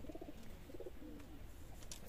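Domestic pigeons cooing faintly, low wavering coos following one another.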